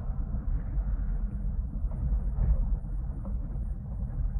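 A car engine running as a low, steady rumble, the car at a standstill after being told to stop.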